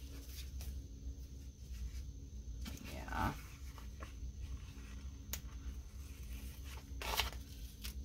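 Pages of a sticker book being turned by hand: soft paper rustles and a few light clicks over a low steady hum, the loudest rustle about seven seconds in.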